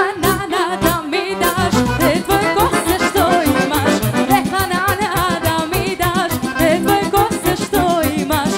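Live Serbian folk band music: an electric violin plays a fast, ornamented melody over accordion and a steady beat. The bass and beat drop back briefly at the start and come back in about a second and a half in.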